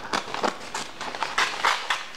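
Scissors snipping through a sheet of green construction paper: a string of short, irregular snips mixed with the rustle of the paper being turned.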